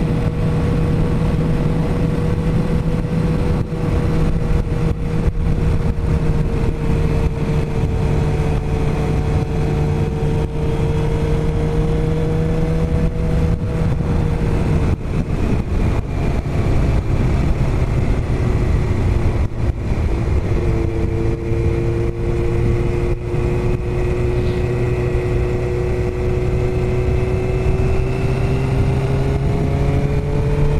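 Suzuki GSX-R sportbike's inline-four engine running at steady cruising revs, heard with the rush of riding at road speed. Its pitch drops about halfway through and then holds steady at the lower revs.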